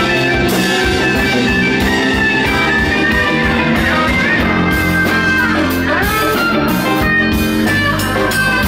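Live rock band playing an instrumental passage: electric guitars over bass, drums and organ, with a guitar line bending its notes up and down.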